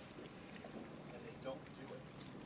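Killer whale (orca) calls heard underwater: short pitched calls that bend up and down in pitch, the clearest about a second and a half in, over a low steady hum.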